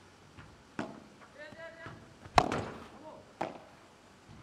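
Padel ball being struck back and forth with solid padel rackets in a rally: a few sharp hits, the loudest about two and a half seconds in. A short voice sounds between the hits.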